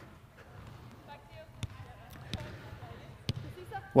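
A soccer ball being passed on artificial turf: three sharp kicks, with faint voices in the background.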